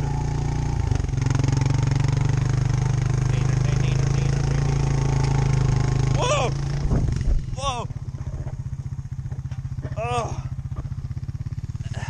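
Four-wheeler (ATV) engine running steadily under load while towing a sled through snow. About six and a half seconds in it eases off into a lower, choppier running note as it slows.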